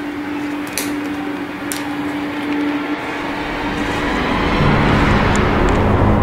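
Horror-trailer sound design: a steady low hum for the first few seconds, then a deep rumble that swells and grows louder through the second half.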